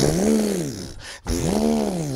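A man imitating a car engine revving with his voice: two drawn-out "vroom" sounds, each rising and then falling in pitch, the second starting about a second and a quarter in.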